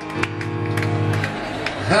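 Stage piano: a chord with strong low notes struck and held for about a second and a half, then a man's short shout of "Ha!" at the end.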